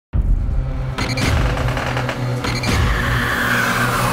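Dark, droning horror-trailer score: a loud low drone with two sudden hits, about one second and two and a half seconds in, and a high tone sliding downward near the end.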